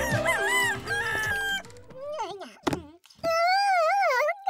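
A short musical phrase ends in the first second and a half, then a cartoon character's wordless voice rises and wavers in pitch in a long stretching yawn, with a short pop partway through.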